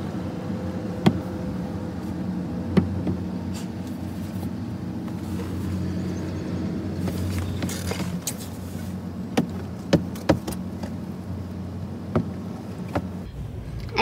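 A long-handled squeegee swishing and knocking against a truck's wet windshield and side mirror, heard from inside the cab, with sharp taps scattered through and a cluster of knocks near the end. A steady low mechanical hum runs underneath.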